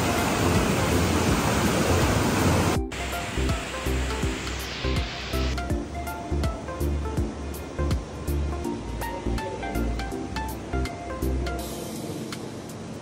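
Whirlpool tub jets churning the water, a loud rushing hiss for the first three seconds or so that cuts off suddenly, over background music with a steady beat. The music then carries on alone.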